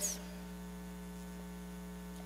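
Steady electrical mains hum: a low, even buzz made of several fixed tones that stays level throughout.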